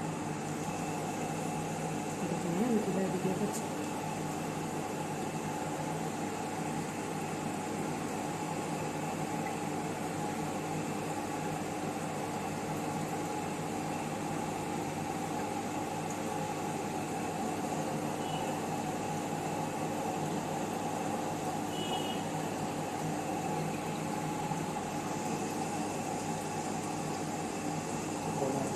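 Steady mechanical hum with a few constant tones running underneath, unchanging throughout.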